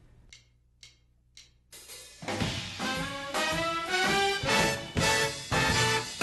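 A 19-piece big band, with a sax, trumpet and trombone section over drums and string bass, plays a short medium-swing example phrase. It starts with a few soft ticks, and the full band comes in just under two seconds in. The eighth notes are swung, the quarter notes on beats two and four are played with more emphasis, and the ends of the eighth-note groups are short and accented.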